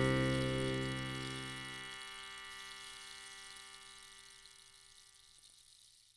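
The final chord of an instrumental acoustic guitar piece rings out and fades away. The lowest notes stop about two seconds in, and the rest dies down to near silence by the end.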